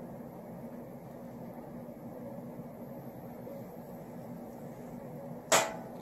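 Steady room tone: a low, even hum with a faint steady tone under it. About five and a half seconds in there is one short, sharp sound.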